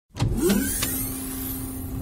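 Film sound effects: a whine that rises in pitch and settles into a steady electric hum, with two sharp knocks, the second about a second in.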